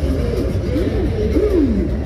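Loud amplified music over a concert sound system, with a heavy steady bass and a lead line that swoops up and down several times.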